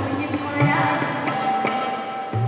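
Indian classical music: tabla strokes, with deep booming bass-drum beats, over a steady held tone.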